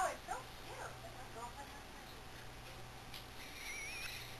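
Sleeping dachshund whimpering: a few short, high, rising-and-falling whines in the first second, the first the loudest, then a thin wavering whine near the end.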